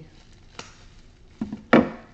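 Scissors snipping through plastic bubble-wrap packaging: a light click, then two sharp cuts near the end, the last much the loudest.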